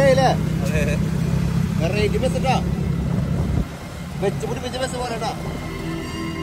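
Motorcycle-taxi engine running steadily, heard from the passenger seat, with voices talking over it. About three and a half seconds in, the engine rumble drops to a quieter road-traffic sound.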